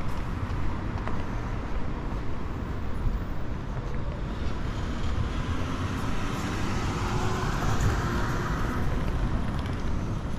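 Street traffic: a car drives past, its tyre and engine noise swelling between about six and nine seconds in, over a steady low rumble.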